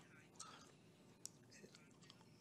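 Near silence: room tone in a pause between sentences, with a few faint ticks.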